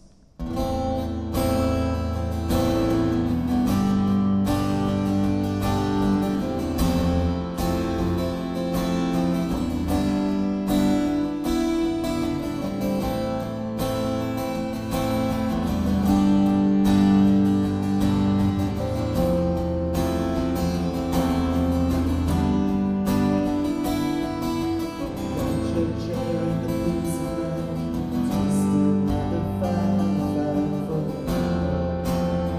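Live acoustic music: a steel-string acoustic guitar strummed and picked, with a second held melody line over it, starting about half a second in as the song begins.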